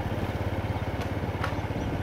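Motorcycle engine running steadily at low speed, an even, fast low pulsing hum.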